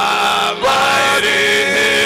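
Amplified worship singing led by a man's voice with other singers, in long held notes, with a brief break about half a second in.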